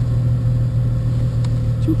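Citroën Traction Avant 15 Six's straight-six engine idling steadily with the car standing still, a low even hum.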